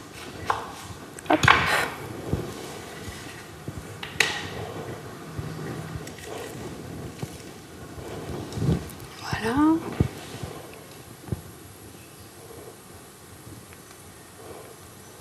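Kitchen handling sounds: a knife cutting a lemon in half on a wooden board, with a few sharp knocks, then a lemon being pressed on a plastic citrus juicer.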